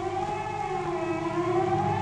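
A siren wailing on one held tone that wavers slightly in pitch.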